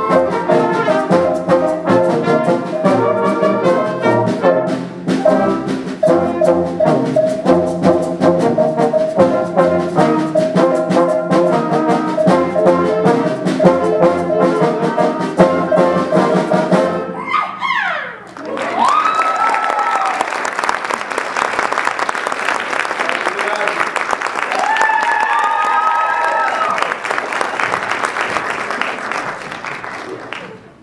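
A concert band with brass and woodwinds plays the final bars of a piece, which ends a little over halfway through. The audience then applauds steadily until the end, with a few rising and falling whoops.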